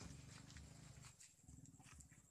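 Near silence: a faint low hum with a few faint ticks.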